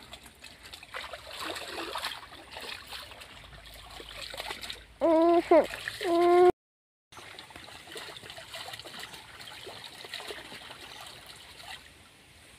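Water splashing and trickling as laundry is washed by hand in shallow stream water, with small irregular splashes throughout. About five seconds in a loud voice calls out "look", and the sound cuts out completely for about half a second just after.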